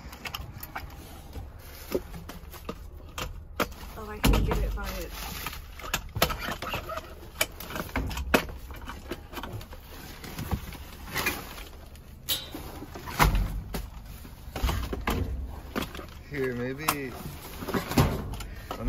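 Handheld grabber tool clicking, knocking and scraping as it picks through bagged trash, cardboard and newspaper in a dumpster, with rustling and two heavier thumps about four and thirteen seconds in.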